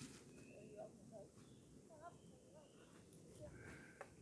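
Near silence, with faint distant voices.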